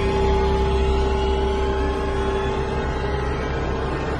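Dark, horror-style ambient drone: a deep, steady rumble under a single held tone, fading slightly.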